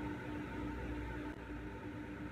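Steady low hum and hiss of room tone, with a faint tone that pulses about four or five times a second.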